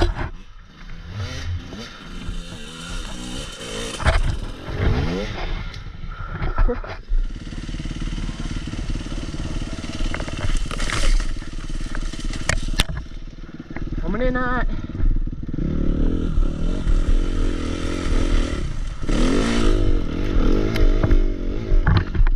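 Suzuki RM-Z250 four-stroke single-cylinder dirt bike engine revving up and down repeatedly under load, with sharp knocks from the bike over rough ground.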